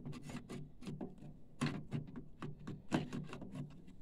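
Irregular plastic clicks, taps and rubbing as a printer's ink pump and capping-station assembly is slid by hand back into the chassis, with sharper clicks about a second and a half in and again near three seconds.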